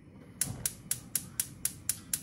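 Gas hob's electric spark igniter clicking rapidly and evenly, about four clicks a second, as a burner is lit under the wok.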